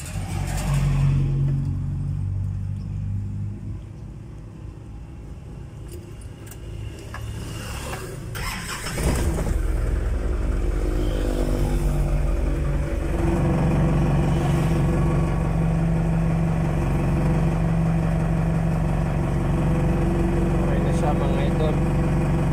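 A vehicle engine is started about eight to nine seconds in and then idles steadily.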